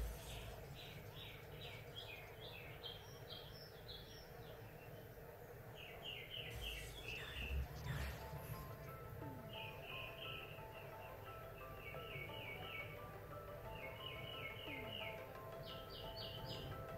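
A small bird chirping in repeated quick runs of four to six high notes, several runs in a row, over a low steady hum.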